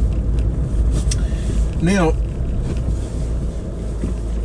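Car engine and road noise heard inside the cabin while driving: a steady low rumble.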